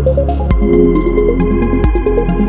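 Electronic instrumental music: a fast synth arpeggio over a sustained bass, with quick regular high ticks. A short rising noise swell leads into a hit about half a second in, where the bass and chords change, and a second hit comes near the end.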